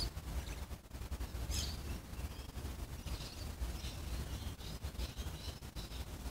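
Quiet outdoor ambience: faint, scattered bird chirps over a low rumble on the microphone.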